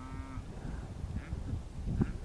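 A brief, short moo from cattle at the start, over a low rumble of wind on the microphone.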